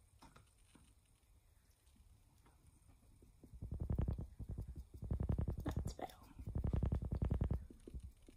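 A small sponge dabbed rapidly against a vinyl reborn doll head to work on a layer of paint. It is heard as three runs of quick, dull, low patting in the second half.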